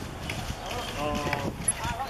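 Men shouting during a football match, with a few thuds of feet or ball on the turf.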